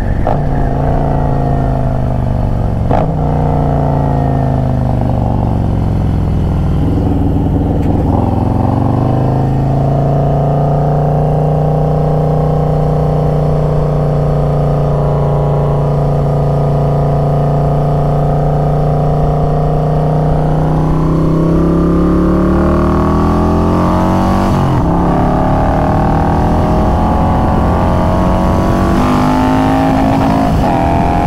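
Harley-Davidson touring motorcycle's V-twin engine heard from the rider's seat while riding. Its note falls over the first several seconds as the bike slows, holds steady for about ten seconds, then rises as it accelerates again, with a gear change partway through the climb.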